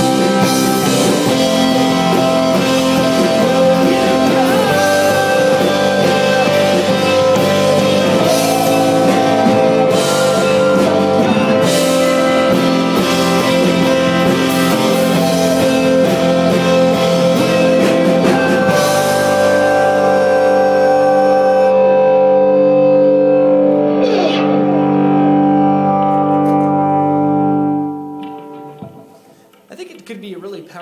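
Rock song with guitars played by a full band. About two-thirds of the way through the beat stops and held chords ring on, then fade away near the end as the song finishes.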